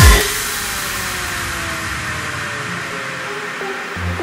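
Breakdown in an electro-house track: after a low hit at the very start, the bass and beat drop out, leaving a steady synthesized noise sweep with a few faint tones sliding slowly downward.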